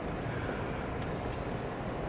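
Steady, quiet room noise of a large hall: an even hiss and low rumble with no distinct event.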